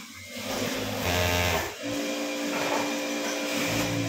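Industrial lockstitch sewing machine running at speed as fabric is stitched, in two runs with a brief pause a little under two seconds in.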